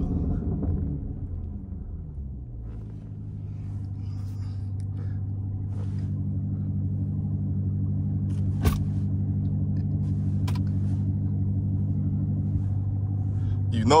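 Jeep Grand Cherokee Trackhawk's supercharged 6.2-litre V8 heard from inside the cabin, its revs falling over the first two seconds and then running steadily at a low, even pitch. A single sharp click about two-thirds of the way through.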